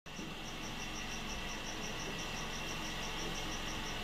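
Crickets chirping in an even, steady pulse about four times a second, with a low steady rumble underneath.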